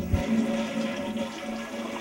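A toilet flushing, with water rushing down the bowl. It starts suddenly just after the opening moment and keeps going steadily.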